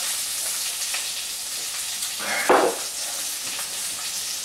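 Hot grease sizzling steadily in a frying pan, a continuous hiss. One short breathy exhale comes about two and a half seconds in.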